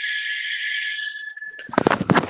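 Steady hiss with a thin, high, steady whistle through it, heard over a video-call participant's open microphone. It cuts off abruptly near the end, followed by a few sharp crackling clicks.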